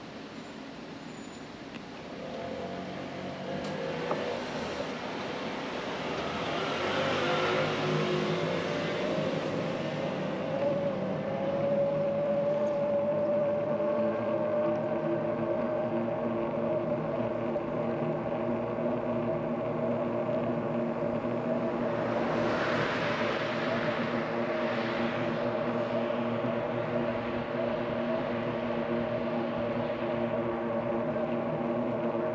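Electric-assist bicycle motor whining as the bike pulls away, its pitch rising as it speeds up and then holding steady at cruising speed, with tyre and road noise underneath. Two swells of rushing noise come about seven and twenty-two seconds in.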